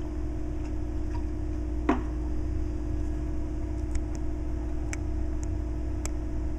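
Steady low hum of room tone with a faint steady tone in it, a short falling squeak about two seconds in, and a few faint ticks later on.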